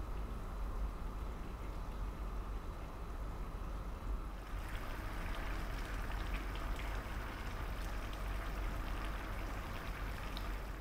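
Pig trotters simmering in adobo sauce, the liquid bubbling and popping in the pot, with the bubbling growing louder about four seconds in. A low steady hum runs underneath.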